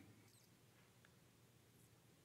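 Near silence: faint room tone, with a faint short high chirp about a third of a second in.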